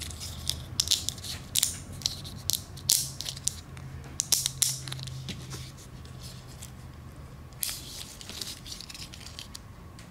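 Small plastic fuel-injector connectors, pins and wires handled and pressed together by hand, giving a quick run of sharp clicks and rustles through the first half and a few more near the end. A low steady hum lies underneath and fades out near the end.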